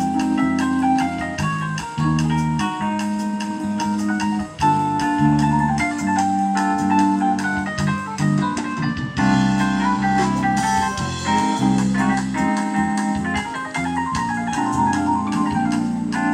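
Live jazz band playing, led by sustained electric keyboard chords with an organ-like tone over a moving bass line.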